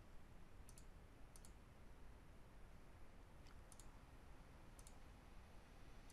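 Faint computer mouse clicks, about five, several coming as quick pairs, against near silence.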